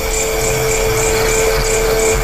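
Eerie background music: one long held note over a steady hiss, with a faint high pulse repeating about four times a second.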